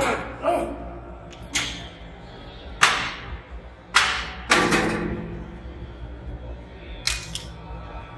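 A lifter's short, forceful exhalations, about six at irregular intervals, one longer with some voice in it near the middle, as he strains through reps on a leg press. Quiet background music runs underneath.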